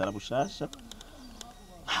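A bird calling faintly in the background during a short pause between bursts of a man's speech.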